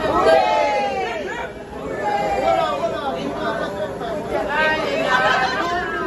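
Excited chatter of a small group of people, several voices talking over one another.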